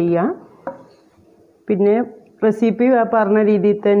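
A woman speaking, with one short click, like a dish being touched, about two-thirds of a second in.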